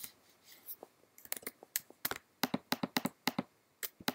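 Clicks of a computer keyboard and mouse in a small room: a few scattered clicks, then a quick run of about a dozen in the second half.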